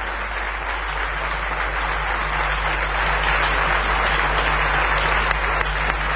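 Crowd of supporters applauding steadily, swelling a little as it goes on, over a low steady hum.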